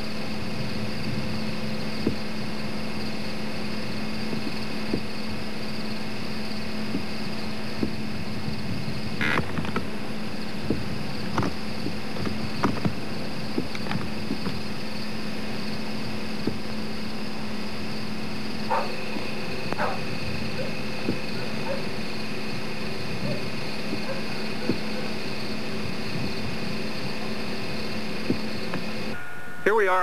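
A steady low hum over even hiss, with a few faint clicks and short chirps scattered through the middle.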